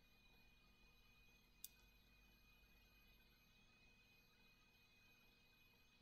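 Near silence: room tone, with one faint click about one and a half seconds in.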